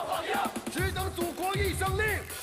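A large group of male soldiers chanting a military song's lines in unison, shouted rather than sung, over a backing track with a heavy, steady low beat.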